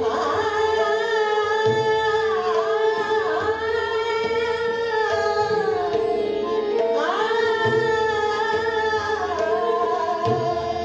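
Woman singing Hindustani classical khayal in Raag Bhairav: long held notes that bend and slide between pitches. Behind her are a steady tanpura and harmonium drone and low tabla strokes keeping a slow taal.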